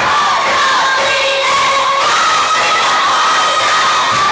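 A crowd cheering and screaming loudly in high voices, with music playing underneath.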